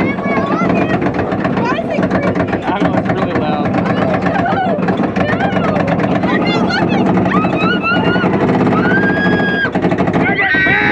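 Roller coaster train climbing its lift hill: a rapid, even clacking from the lift chain and anti-rollback dogs over a steady mechanical hum. Riders' whoops and held shrieks grow over the last few seconds as the train nears the crest.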